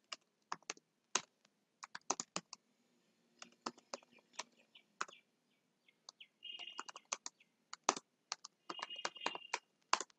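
Computer keyboard typing: irregular clicking keystrokes, in quick runs with pauses. Two brief high chirps, about six and nine seconds in.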